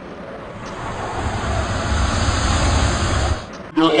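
Rushing whoosh sound effect with a deep rumble under it, swelling over about three seconds and then cutting off suddenly.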